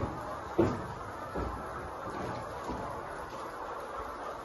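Steady background chatter of a large flock of caged laying hens, with a sharp knock about half a second in and a couple of fainter knocks after it.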